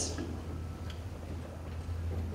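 Quiet room tone: a steady low hum with a couple of faint ticks.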